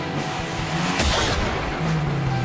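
Car accelerating hard with tyre noise, the rush of sound swelling to its loudest about a second in.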